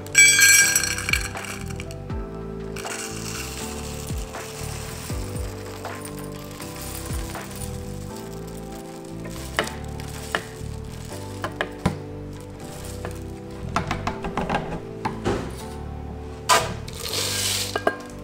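Dry rolled oats poured from a plastic canister into a metal measuring cup, a rattling pour with small clinks, then tipped into a plastic blender cup with a second rush near the end. Soft background music plays throughout.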